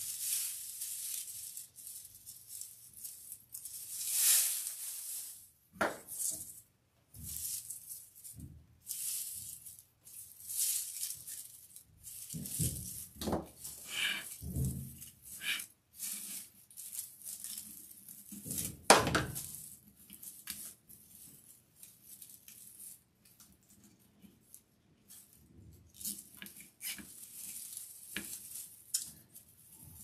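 Dry raffia strands and deco mesh rustling and crinkling in irregular bursts as they are handled and tucked into the wreath, with one louder thump about nineteen seconds in.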